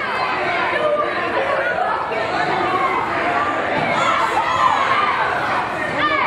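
Small crowd of children and adults chattering and calling out at once, many voices overlapping, echoing in a gymnasium.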